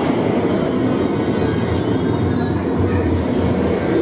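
Loud, steady rumbling noise inside the Pinocchio dark ride, with no clear tune or voices: the sound of a ride car moving along its track through the whale scene.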